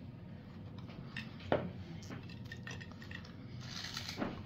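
Light clinks and taps of ceramic plates on a tiered serving stand as pastries are picked off it, with one sharper clink about a second and a half in.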